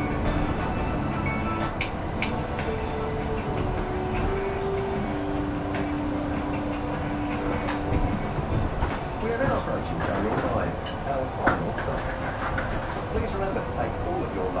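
Onboard running noise of a Heathrow Express Class 332 electric train slowing for its station stop: a steady rumble with a motor whine that steps down in pitch. Scattered clicks and knocks come in the second half.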